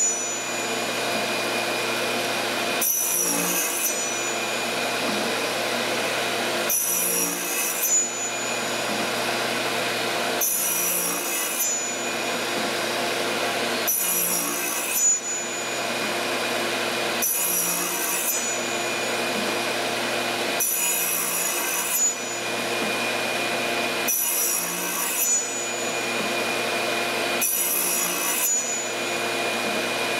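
Radial arm saw with a thin fret-slotting blade running steadily alongside a shop vacuum, cutting fret slots into an ebony fretboard one after another. A brief, brighter cutting sound comes about every three and a half seconds, eight cuts in all.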